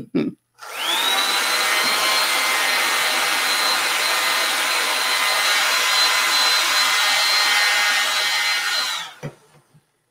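A handheld JCPenney hair dryer is switched on and blown over wet watercolour paint on paper to dry it. Its motor whine rises over the first second to a steady high whine with rushing air, and it is switched off about nine seconds in.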